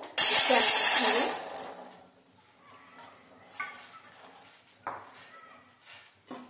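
A handful of small amla (Indian gooseberries) poured into a perforated steel steamer basket: a loud clatter of fruit hitting steel for about a second and a half, dying away. Then a couple of light clinks of steel.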